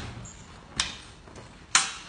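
Two sharp clacks of eskrima sticks striking, about a second apart, the second louder.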